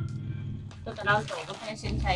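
Brief, quiet speech from people in the room, over a steady low hum.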